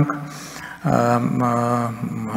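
A man's speaking voice through a podium microphone: a brief pause, then one drawn-out vowel held at an even pitch for about a second before the speech goes on.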